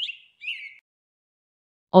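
A few short, high bird chirps in the first second, followed by silence until speech begins at the very end.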